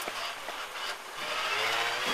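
Rally car's engine heard from inside the cabin, running low in first gear under a hiss of road noise, then revving up with a rising note from about halfway through.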